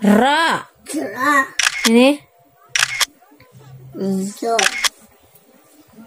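Speech: voices reading aloud syllable by syllable in a Quran-reading lesson, the drawn-out syllables gliding up and down in pitch. A few sharp clicks fall between the syllables, from about one and a half to five seconds in.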